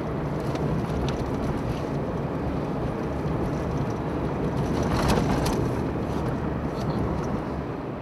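A car driving along a road, with steady engine and tyre noise from the moving vehicle.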